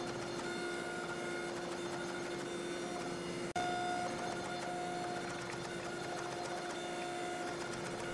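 Steady mechanical hum of a hydraulic forging press's electric motor and pump running, with a brief break about three and a half seconds in.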